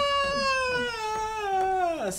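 A person's voice holding one long, high note that slowly falls in pitch and stops near the end.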